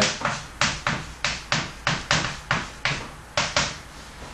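Chalk tapping and scratching on a chalkboard as a line of maths is written: a quick, irregular run of short sharp strokes, about three or four a second.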